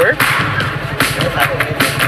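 Engine of a homemade scrap-metal car idling with a steady, fast-pulsing low rumble, with a few sharp clicks over it.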